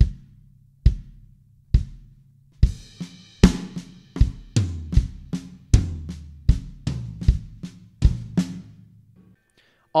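Drum kit played at a slow tempo. A steady bass drum on the quarter notes, a little more than one beat a second, plays alone for about two and a half seconds. It is then joined by a fill of accented right-hand hits on the crash cymbal and floor tom, with quiet left-hand ghost notes on the snare, and the playing stops shortly before the end.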